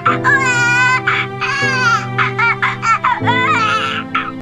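A high-pitched, wavering wailing cry in several drawn-out cries over music with held low chords.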